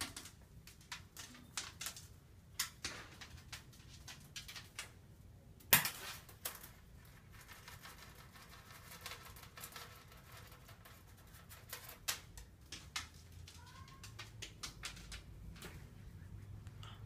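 Scattered light taps and clicks as a cat plays with a toy mouse on a wand among wooden furniture, with one sharper knock about six seconds in.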